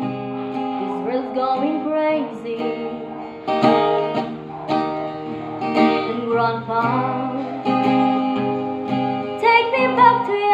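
A woman singing to her own strummed acoustic guitar, a slow country ballad.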